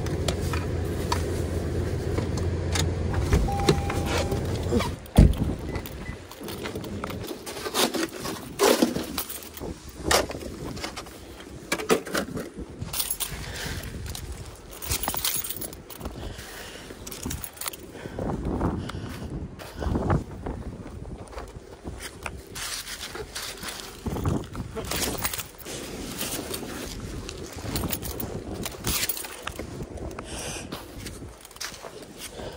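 For the first five seconds, the steady low hum of a car's cabin with the vehicle running, ending in a sharp knock like a car door shutting. Then irregular crunches, scrapes and knocks in packed snow and ice.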